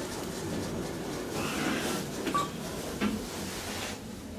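Kone EcoDisc traction elevator car travelling up, heard from inside the cabin: a steady ride noise with a few light clicks and a short high blip partway through.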